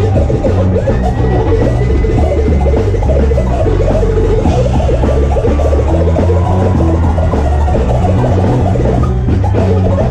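Live band playing an instrumental hip-hop groove on drum kit, bass guitar, electric guitar and keyboards, with heavy, steady bass. A held high note sounds from about a second in for a couple of seconds.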